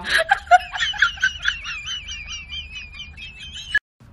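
A person laughing in rapid, high-pitched squealing bursts, about four a second, cut off abruptly near the end.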